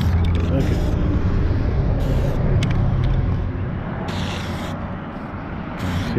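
An aerosol spray-paint can hisses in several short bursts; the longest comes about four seconds in. Under it a vehicle engine hums low and steady, fading about halfway through.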